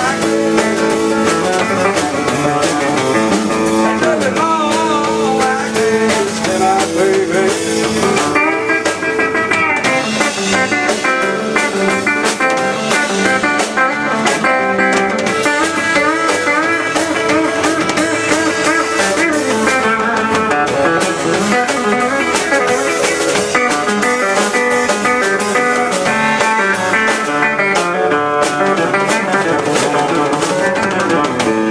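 Live band playing blues-style music: electric guitar leading over a drum kit, continuous through the passage.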